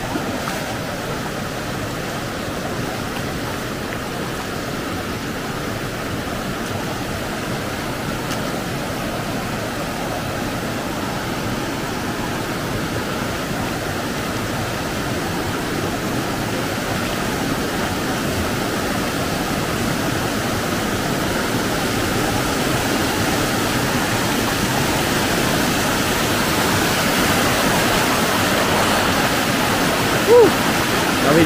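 A shallow river rushing over a low rock ledge in small cascades, a steady wash of water that grows gradually louder.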